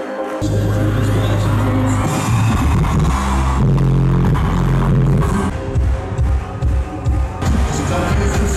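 Loud live concert music from a large PA system. A heavy bass comes in suddenly about half a second in and then pulses through the rest.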